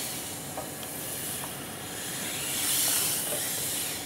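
Steady hissing whir of a musculoskeletal humanoid robot's tendon actuators as it moves its arms and torso, swelling about three seconds in, with a few faint small ticks.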